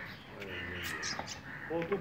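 Bird calls, with a man's voice briefly near the end.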